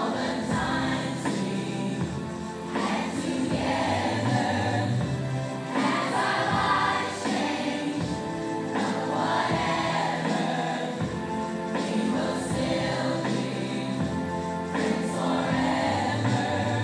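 A large children's choir singing a song together.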